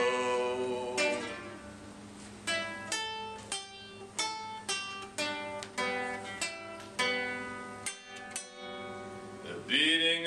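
Acoustic guitar played solo, single plucked notes and short figures each ringing and decaying, about two a second. A held sung note fades out in the first second, and the voice comes back just at the end.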